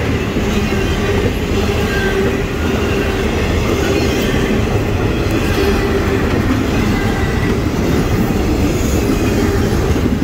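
CSX double-stack intermodal container train's well cars rolling past close by: a steady, loud rumble of steel wheels on rail.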